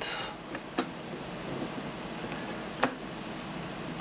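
Two light metallic clicks of small metal parts being handled, one about a second in and a sharper one near three seconds, over a faint steady hiss.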